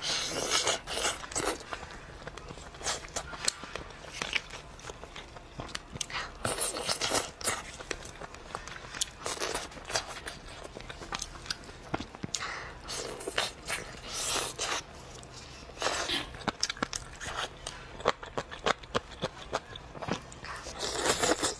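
Close-miked eating sounds: biting into and chewing boiled chicken, with irregular wet clicks and smacks in bursts, and plastic-gloved hands pulling the meat apart.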